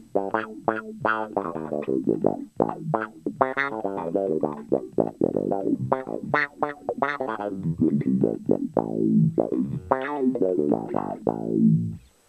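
Electric bass played fingerstyle through a DOD FX25B envelope filter pedal: a busy funk riff, about three to four notes a second. Each note gets a vowel-like wah 'quack' as the filter sweeps open on the attack and closes as the note decays, with the sensitivity turned up for the lower output of finger playing.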